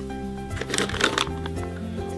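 Background music with a crinkling, rustling packet about half a second in, as a foil blind bag is pulled out of a bowl of toys.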